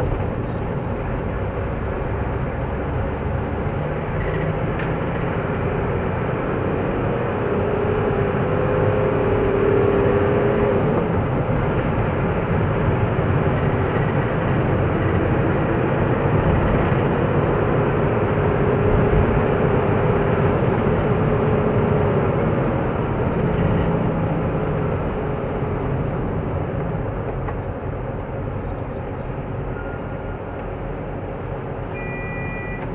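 Car driving on a city road, heard from inside the cabin: steady engine and tyre noise, with an engine hum that swells louder twice, about a third of the way in and again past the middle.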